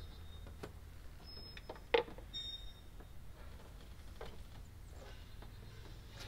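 Faint, scattered clicks and knocks of hand tools, a ratchet and a breaker bar, working on the LS9's supercharger belt tensioner, with one sharper metallic click about two seconds in, over a low steady hum.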